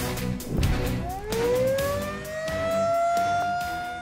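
Intro music with a beat, then an outdoor tornado warning siren winds up about a second in, its pitch rising and settling into a steady wail.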